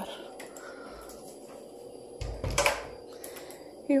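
A house door being shut: a thud with a short clatter about two seconds in, over quiet room tone.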